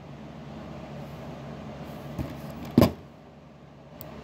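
Low, steady room hum with a faint tick and then a single short knock near the three-second mark.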